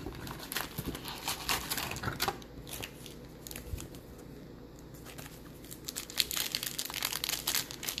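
Foil wrapper of a Topps Chrome trading-card pack crinkling in the hands, with irregular crackles, a quieter spell in the middle, then denser crinkling and tearing near the end as the pack is torn open.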